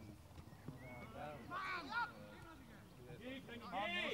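Players shouting across a football pitch, several raised voices at a distance, with no clear words.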